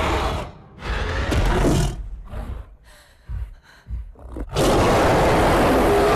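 Film creature roars: a loud roar at the start, then a broken, quieter stretch of short soft hits. About four and a half seconds in, a giant gorilla's roar starts suddenly and holds loud to the end.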